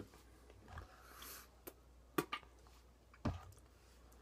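A tin of snuff being handled: a few soft clicks and taps, with a brief rustle about a second in.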